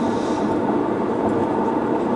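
Steady road and engine noise heard inside the cabin of a car cruising at freeway speed, an even sound with no distinct events.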